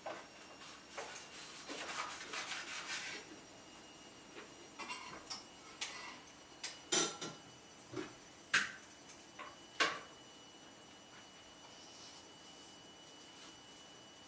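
A small knife scraping and cutting into a pumpkin's shell: a run of scratchy strokes over the first three seconds, then a handful of sharp clicks and taps between about five and ten seconds in.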